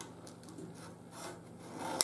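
A few faint scratching strokes of a marking tool drawn along a speed square on a strip of aluminum sheet, marking it out for cutting.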